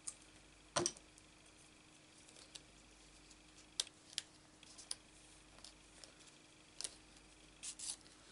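Die-cut paper leaves being handled and pressed down onto a card on a craft mat: scattered light taps, clicks and paper rustles, with one sharper knock about a second in.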